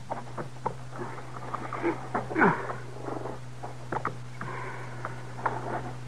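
Radio-drama sound effects: scattered light clicks and knocks, with a short, louder animal call about two and a half seconds in, over a steady low hum from the old recording.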